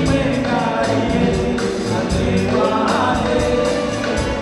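Comorian twarab music played live: several voices singing a melody together over a steady, quick percussion beat.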